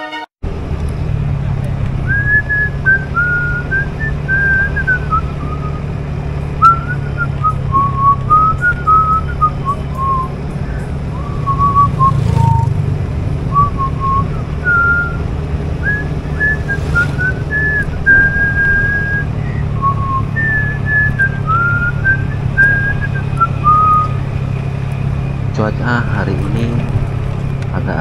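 A person whistling a wandering tune, one clear note at a time, over the steady low drone of a motorcycle on the move. The whistling stops a few seconds before the end, when speech begins.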